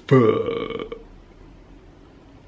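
A man makes one drawn-out wordless vocal sound, about a second long, that trails off.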